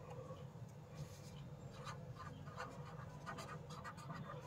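Pen writing on paper, a run of short faint scratchy strokes, over a low steady hum.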